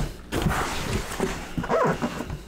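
Utility knife blade slicing through packing tape along a cardboard box seam, a scraping cut with a brief squeaky rise near the end.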